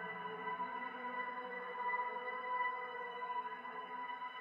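Quiet electronic music: a sustained synth pad chord of steady held tones, swelling slightly, with no beat.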